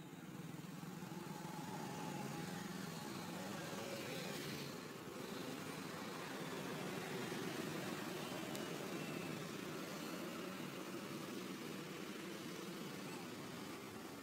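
An engine running steadily at low revs, its low hum wavering slightly in pitch.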